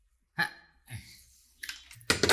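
Short hiccup-like vocal sounds from a person: a sharp one just under half a second in and a weaker, lower one about a second in.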